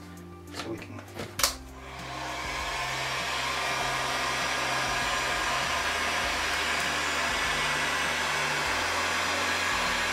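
A few handling clicks in the first second and a half, then a heat gun switches on about two seconds in and blows steadily. It is heating a partial knife cut in EVA foam so the cut opens up into a groove.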